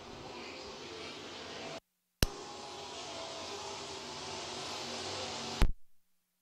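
Super trucks' engines running as the field laps the oval, a steady drone with a hiss. The sound drops out to dead silence for a moment about two seconds in, returns with a sharp click, and cuts off with another click near the end.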